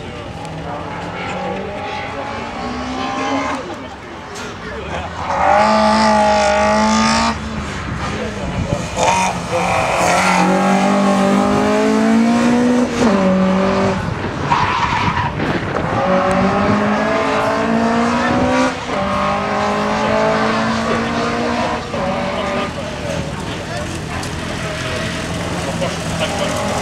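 Ford Puma sprint car's engine accelerating hard. Its pitch climbs through each gear and drops back at each shift, several times over.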